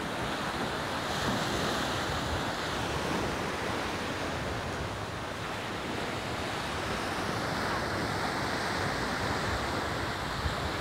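Steady rushing noise of wind blowing across the microphone, with a flickering low rumble and no distinct events.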